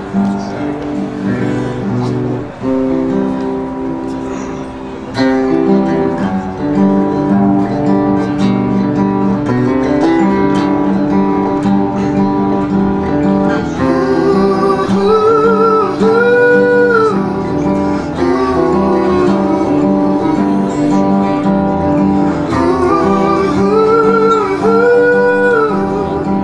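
A man playing a song on an acoustic guitar, strumming chords that get louder about five seconds in. From about fourteen seconds in he sings over it, holding long, wavering notes twice.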